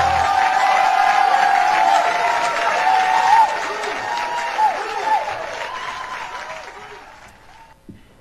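Audience applauding after a song, with a few voices calling out over the clapping in the first few seconds; the applause dies away gradually and is nearly gone by the end.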